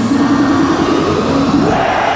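Hardstyle dance music over a large arena crowd, with the kick drum dropped out as in a breakdown. A pitched line, synth or crowd voices, rises near the end.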